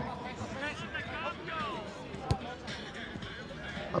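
Football match sounds from the pitch: faint shouts of players, and a single sharp kick of the ball a little over two seconds in.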